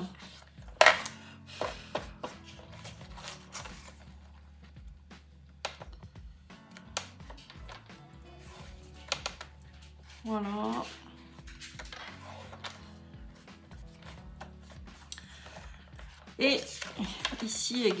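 Soft background music under paper and card being handled, folded and pressed down on scrapbook pages, with scattered light clicks and taps and one sharp click about a second in.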